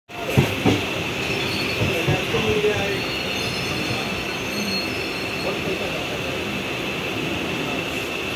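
Running noise of a moving suburban electric train heard through an open carriage door: steady rumble of wheels on rails with a continuous high squeal. Two sharp knocks in the first second and a few more about two seconds in.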